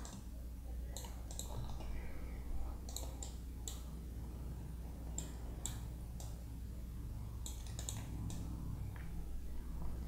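Scattered, irregularly spaced clicks of a computer mouse, about a dozen, over a faint steady low hum.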